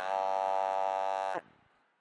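A man's voice holding one long, level vowel, cut off sharply after about a second and a half and then fading out.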